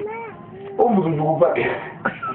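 A man's voice: one drawn-out vowel held for most of the first second, then a quick run of speech with a short hiss near the end.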